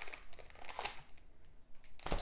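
Faint crinkling of plastic comic-book bags as bagged comics are handled and swapped, in a few short rustles.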